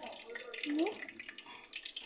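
Breaded croquettes shallow-frying in hot canola oil in a skillet: a steady sizzle with fine crackling.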